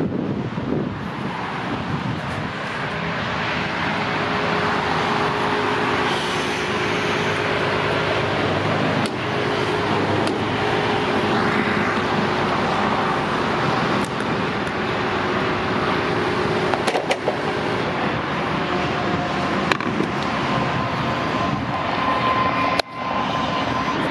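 Steady road traffic and car engine noise, with faint steady hums and a few sharp clicks and knocks.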